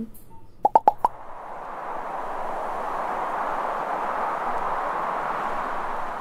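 Cartoon sound effects: four quick pops about a second in, then a steady wind-like rush that swells in and holds.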